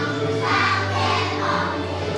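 A group of kindergarten children singing a graduation song together in chorus, over music.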